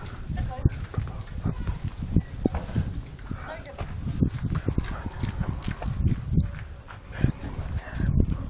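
A man talking to the camera, his speech overlaid by a choppy low rumble of wind buffeting the microphone.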